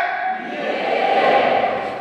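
A congregation's many voices answering together in a steady, blended murmur, responding to the preacher's call.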